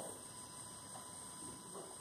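Quiet room tone: a faint steady hiss with a thin steady hum, and no distinct sound events.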